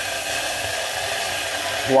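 Red wine poured into a hot saucepan, sizzling with a steady loud hiss as it boils off in steam.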